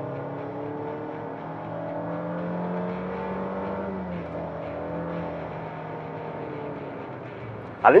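Honda HR-V Touring's 1.5-litre turbocharged four-cylinder engine pulling under full throttle. Its pitch climbs steadily, drops suddenly about halfway through, then holds and eases off near the end.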